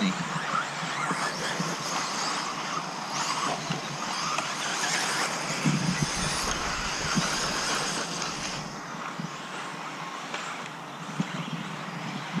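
Several electric 4wd radio-controlled buggies racing on a dirt track: a high whine of motors and drivetrains mixed with tyre noise, easing off somewhat after about nine seconds.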